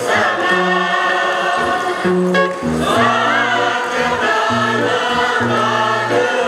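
Choir of mostly women singing a traditional Paiwan ancient chant in several parts, voices held on long notes, with a short pause for breath a little over two seconds in.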